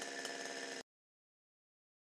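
Two-stroke chainsaw engine running faintly and steadily, cut off abruptly under a second in, followed by dead silence.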